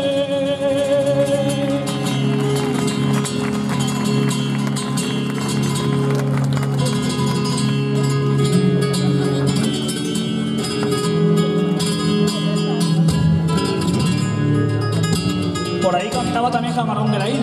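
A male flamenco singer holds the last wavering note of a fandango line, which stops about two seconds in. A solo flamenco guitar then plays the fandango accompaniment alone, with sharp plucked and strummed notes.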